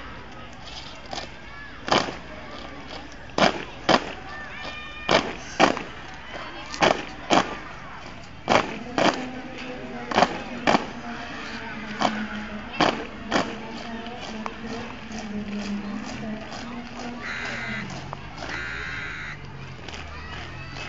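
A squad of cadets stamping their boots in unison on brick paving during foot drill: sharp loud cracks, often in pairs, every second or two, with lighter footfalls between. Shouted drill commands are mixed in.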